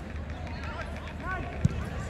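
Football match heard from the touchline: scattered shouting voices from the pitch and stands over a steady low hum, with one sharp thud about one and a half seconds in.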